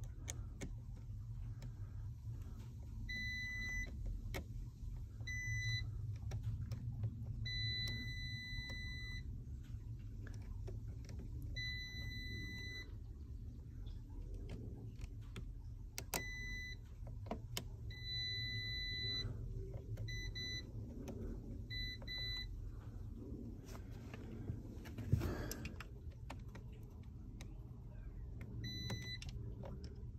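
Klein digital multimeter beeping in continuity mode as its probes touch fuse after fuse: about ten steady high-pitched beeps, some brief and some over a second long. Each beep shows continuity through the fuse, meaning the fuse is good. A single short knock comes about five seconds before the end, over a faint low hum.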